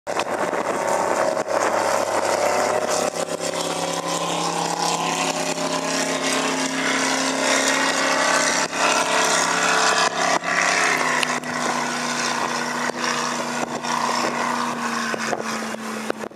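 Performance speedboat's engine running at speed as the boat passes and pulls away: a steady drone whose pitch slowly sinks, over a hiss.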